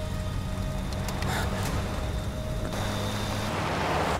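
Steady low rumble of a pickup truck driving, under a held drone of background music.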